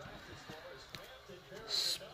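Trading cards in plastic toploaders being handled and picked up from a table: faint clicks and shuffling, then a short plastic slide-and-scrape near the end.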